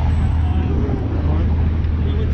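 City street traffic: cars and a bus driving past, a steady low rumble with an even wash of road noise.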